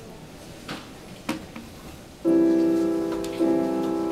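Grand piano starting to play about two seconds in: a sustained chord, then a second chord about a second later, each left to ring and fade. Before it there is only faint room noise with a couple of small knocks.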